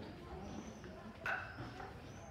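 Street ambience of faint, distant voices, with one short, louder call a little over a second in.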